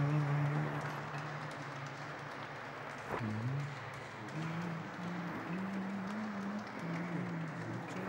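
Scattered applause from a church congregation under low male chanting. A long held note fades out in the first second, then a slow line of held notes is sung from about halfway through.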